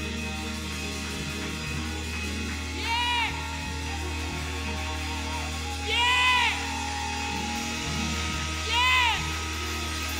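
Live band music with a steady, sustained bass, and a pitched phrase that rises and falls, repeating about every three seconds.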